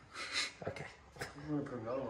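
A vinyl sticker being pressed and rubbed onto car window glass by hand: a short scuffing hiss and a couple of light taps, followed by a brief man's word.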